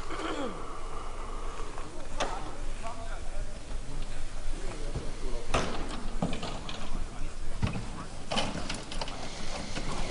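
Indistinct voices of people talking at a distance, with a few sharp knocks scattered through.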